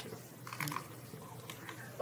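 A few faint, sharp clicks and light rustling of handling, after a brief spoken word at the start.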